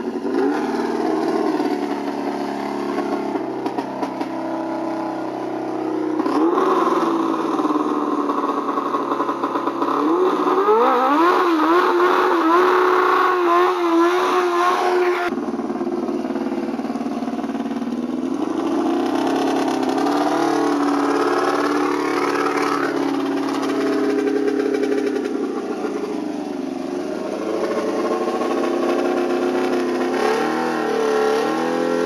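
Drag race car's engine idling and revving repeatedly while being prepared for a run, with revs held high and wavering for several seconds about ten seconds in. About fifteen seconds in the sound changes abruptly to the engine idling and blipping with slower rises and falls.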